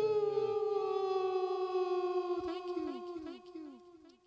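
A single held note run through echo effects, fading away over about three and a half seconds, with a regular trail of repeats that slide downward in pitch.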